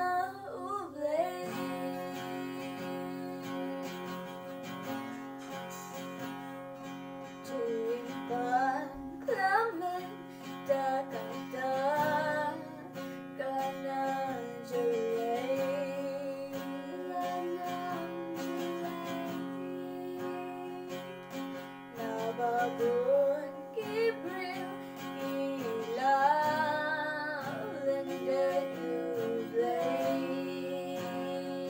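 An acoustic guitar plays chords throughout while female voices sing a melody over it.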